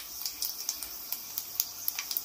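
Whole spices, including cloves, cardamom, bay leaf and star anise, frying in hot oil in a pot: a soft sizzle with many small irregular crackling pops.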